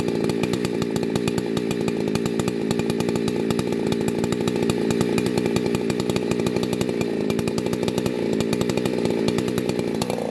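Husqvarna two-stroke chainsaw running steadily at a low, even engine speed, idling without cutting.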